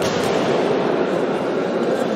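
Steady din of crowd chatter blurred by the echo of a large sports hall, with no single voice standing out.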